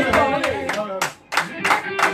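Several people clapping their hands in a steady rhythm, about three claps a second, over electric guitar notes. The guitar drops out briefly just past the middle while the clapping carries on.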